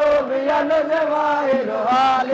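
Male voices chanting a devotional hadra chant together, holding long notes with slides in pitch between them.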